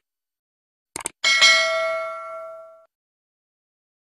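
Two quick clicks about a second in, then a bright bell ding that rings for about a second and a half and fades out: a subscribe-button click-and-notification sound effect.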